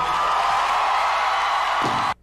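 A live audience applauding and cheering at the close of a comedy-song performance, a steady, even wash of clapping and cheers.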